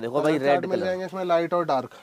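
A man's voice talking continuously in Hindi, not clearly made out.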